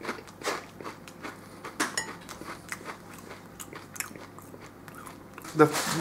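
A person chewing Walkers Pops popped potato crisps: a string of short, sharp crunches at an irregular pace, one bite after another.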